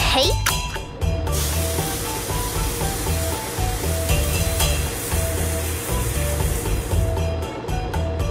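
Cartoon steamer letting off steam: a short sweeping electronic tone as its button is pressed, then a steady hiss from about a second in that fades near the end. Background music plays throughout.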